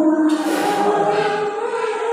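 A woman singing a Mường giao duyên (call-and-response love song) unaccompanied into a microphone, in long held notes that slide slowly between pitches.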